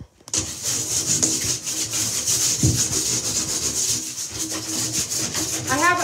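Plastic hanger scraped rapidly back and forth over the bathtub surface, a fast, continuous scratchy rasp made of many quick strokes, scraping off soap scum and deposits. It starts about a quarter second in, and a woman begins speaking near the end.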